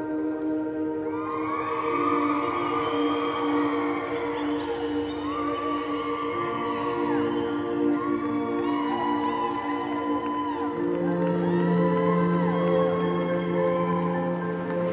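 A crowd cheering and whooping, many voices overlapping, over soft sustained background music. The cheering starts about a second in and goes on in waves.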